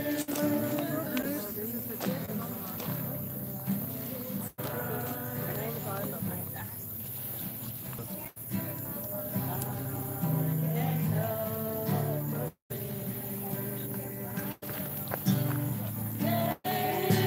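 Acoustic guitar played with voices singing along to a worship song. The sound cuts out completely for a moment several times.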